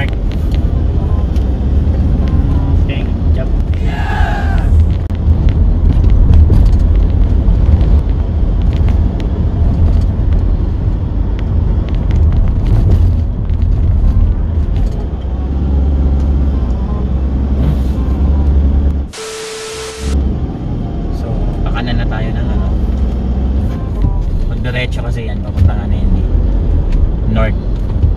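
Steady low rumble of road and engine noise inside a moving car's cabin. About two-thirds of the way through, the rumble cuts out for about a second, replaced by a hiss and a steady tone.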